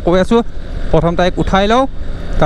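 A voice talking in two phrases over a steady low rumble from the motorcycle being ridden.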